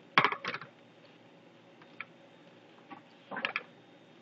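Short clicks and clatter of small hard objects being handled: two sharp clicks right at the start, a faint tick about two seconds in, and another brief clatter near the end.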